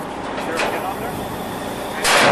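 Steady running noise of the truck engine driving the hydraulic wet kit as the bin trailer's deck begins lifting the grain bin.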